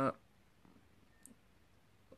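A woman's drawn-out "uh" trails off, followed by a pause of near silence with one faint click a little past halfway.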